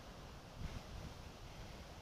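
Quiet outdoor background noise: a faint hiss over an uneven low rumble, with no distinct event.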